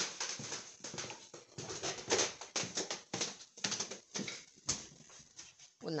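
A house cat close to the microphone, making a run of short, irregular rustling sounds.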